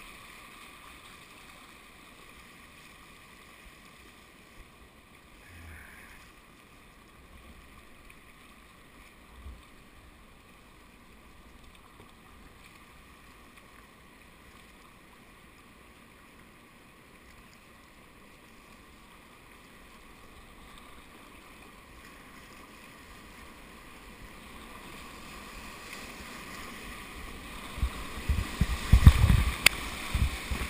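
Fast river water rushing past, faint at first and slowly growing louder as the kayak nears a rapid. In the last few seconds, whitewater splashes onto the camera in a run of loud, low, irregular thuds.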